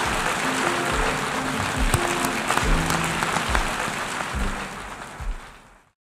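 Audience applauding, with background music and a low beat under it; both fade out near the end.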